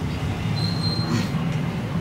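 Steady low background hum of the room, with a brief faint high whistle a little over half a second in.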